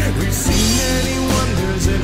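Rock music with electric guitar and drums.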